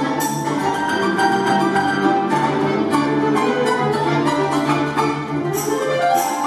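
Folk-instrument ensemble playing a piece: tremolo-picked domras and balalaika with button accordion and grand piano, sustained chords and melody, with a rising run near the end.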